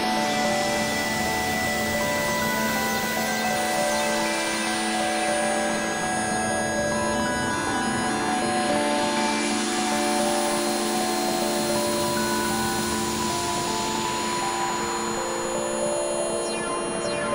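Berlin School-style electronic music played on synthesizers: a sequenced pattern of short stepping notes over a held low drone. Washes of filtered noise swell and fade twice behind it.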